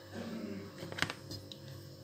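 Faint steady electrical hum, with a single sharp click about a second in.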